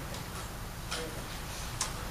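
A few faint, sharp clicks, the clearest about a second in and near the end, over a steady low room hum.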